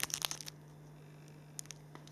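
Small clear plastic parts bag holding spare model landing-gear doors crinkling in the hand: a quick burst of crackles in the first half second, then two faint clicks near the end, over a low steady hum.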